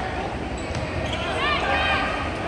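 Indoor volleyball rally: steady crowd chatter in the arena, with several short, high squeaks of players' shoes on the court about a second and a half in.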